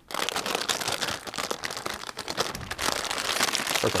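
A plastic bag of drink powder crinkling and crackling as it is handled and pulled at, starting suddenly and going on as a dense crackle.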